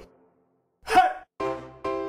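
A quick, sharp intake of breath about a second in, after a moment of near silence, as the player gets ready to play the recorder. Steady musical tones start near the end as the music begins.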